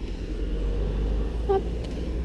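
Steady low rumble of street traffic coming in through an open balcony window.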